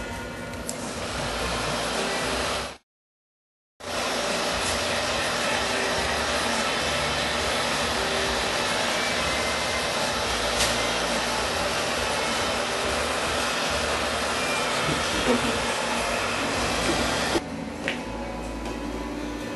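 Handheld hair dryer blowing steadily at a decoupaged shell pendant to dry it. The sound cuts out for about a second near three seconds in and stops shortly before the end.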